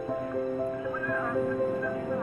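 Background music: a melody of steady held notes, with quick sliding high notes about a second in.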